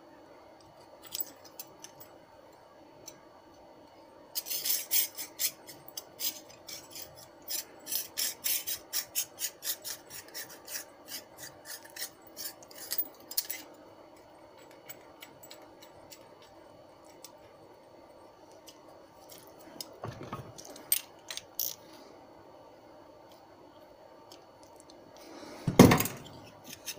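Small steel parts, washers, pressed cups and a nut on a bolt, being turned and fitted by hand, giving a quick run of light metallic clicks and scraping for several seconds. A louder metal clunk comes near the end.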